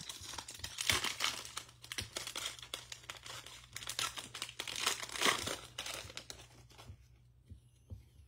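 Foil trading-card pack wrapper being torn open and crinkled by hand: a dense crackle of crinkling foil, loudest about a second in and again around five seconds, dying down near the end.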